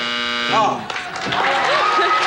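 Game-show time-up buzzer sounding as the 30-second clock runs out, a steady buzz that cuts off about half a second in. A short spoken 'oh' and the start of studio audience applause follow.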